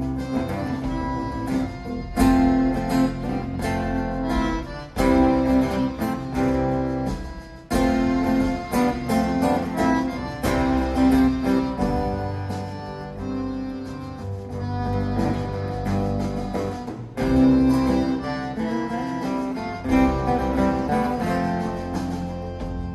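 Live acoustic string band playing an instrumental passage: strummed acoustic guitar, upright bass and fiddle, with no singing.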